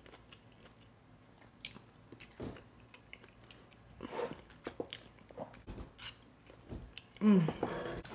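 A person chewing a mouthful of food, with scattered small wet clicks from the mouth, then a short hummed "mm" of enjoyment near the end.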